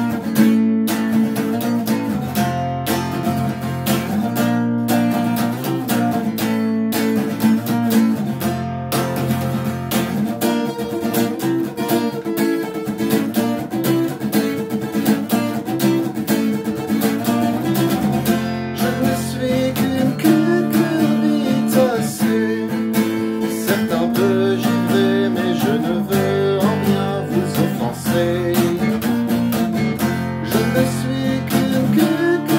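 Acoustic guitar played in a steady rhythm, with full chords changing every second or two in an instrumental passage.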